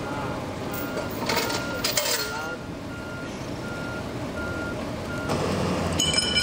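Vehicle backup alarm beeping in a steady rhythm, about one short beep every three-quarters of a second, the sign of a truck reversing, with a few brief clatters early in the run of beeps.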